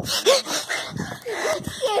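Breathy vocal sounds from kids, with a couple of short rising voice sounds in between, not words.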